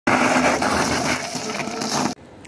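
Greyborg electric bike's tyres crunching over loose gravel as it rides off, with rattling from the bike's running gear, in a steady, dense noise.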